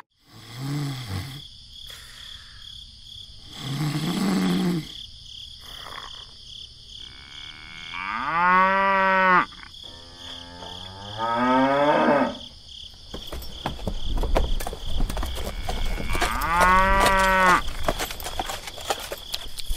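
Cattle mooing: about five separate lowing calls, two short ones early, then longer drawn-out moos around the middle and near the end.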